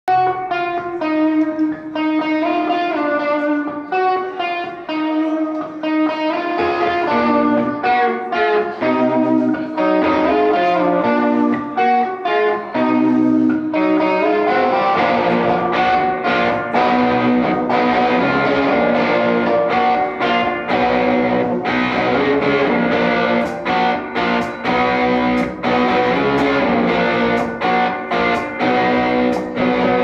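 A live rock band playing an instrumental passage on two electric guitars, bass guitar and drums. For the first half, clean picked guitar notes carry a melody over a light backing. About halfway through, the full band comes in with drums and a thicker, slightly distorted guitar sound.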